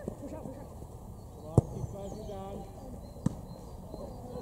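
A football kicked hard, a sharp thump about one and a half seconds in, then a second, softer thump nearly two seconds later, with players' and spectators' voices calling in the background over a low rumble.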